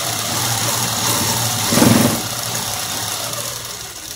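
Sewing machine running steadily at speed, stitching a seam through the fabric, briefly louder about halfway through, and stopping at the end.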